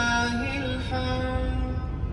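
Background devotional song: a voice singing long, slowly changing held notes over a low steady bed of sound. The sung phrase ends near the end.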